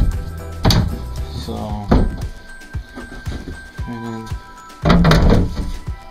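A few thunks of a painted cabin floor panel being handled and set down, about three in all, the loudest near the end, over steady background music.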